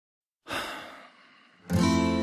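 Music begins: a short breathy hiss that fades within about half a second, then an acoustic guitar strikes its first chord near the end and rings on.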